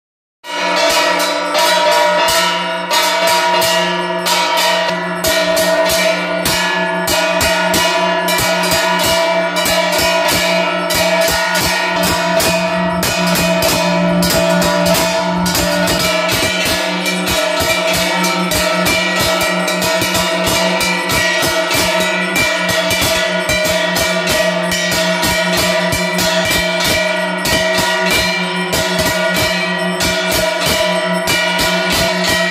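Temple aarti percussion: hand-held brass gongs beaten rapidly and without pause, with bells, their metallic tones ringing on over one another. It starts about half a second in.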